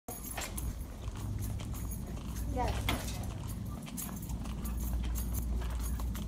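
Footsteps knocking on a hard store floor over a steady low hum, with a short rising tone about two and a half seconds in.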